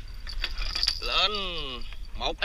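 Light metallic clinks and jangling, then about a second in a drawn-out pitched call that falls in pitch, voice-like and the loudest sound here.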